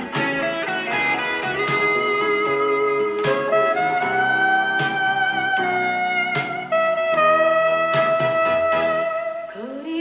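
A 1980s Korean blues ballad played back from a cassette tape: an instrumental passage led by guitar, with long held notes that bend slowly in pitch over a steady accompaniment.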